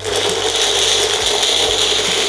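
Small personal blender motor running steadily, grinding nuts and dried fruit with milk in its jar; it switches on suddenly at the start.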